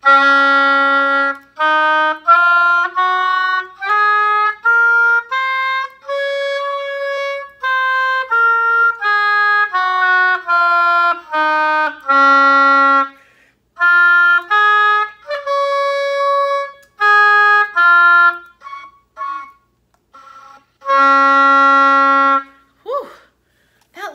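Oboe playing a D-flat major scale, each note separate, climbing an octave to a held top D-flat and back down. It then plays a D-flat arpeggio, where a few notes near the end come out faint and broken before the long low D-flat. The weak, breaking notes are the 'foo-foo sound' that she puts down to a finger leaking over a tone hole.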